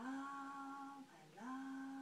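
A woman's voice holding two long notes at one steady pitch, with a short break about a second in.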